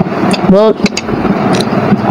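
A woman's voice makes one short sound about half a second in, over a steady rushing background noise with a few faint clicks.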